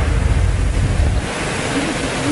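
Wind buffeting the microphone: a steady rush with a heavy low rumble that drops away a little over a second in.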